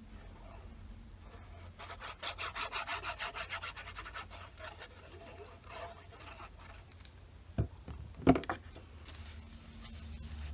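Plastic nozzle of a glue bottle scraping across a small paper card as glue is spread, a quick run of scratchy strokes for about two seconds, then lighter scraping. Two soft knocks come near the end.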